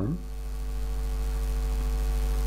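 Steady electrical hum: a low drone with fainter, evenly pitched higher tones above it, unchanging throughout.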